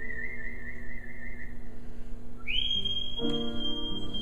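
A man whistling a melody into a microphone over piano accompaniment: a long note with vibrato, then, about two and a half seconds in, a slide up to a higher note that is held as piano chords come in.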